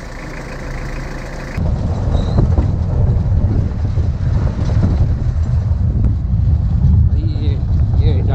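A steady low hum, then after a cut about one and a half seconds in, the loud, uneven low rumble of riding in the open back of an off-road jeep over a rough track: engine and ride noise.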